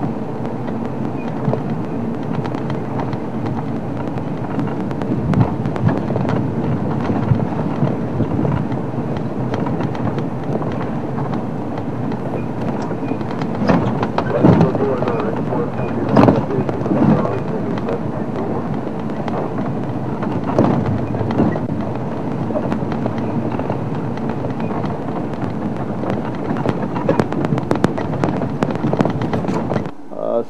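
Open safari vehicle driving along a rough dirt track: steady engine and road noise with frequent knocks and rattles from the bumps.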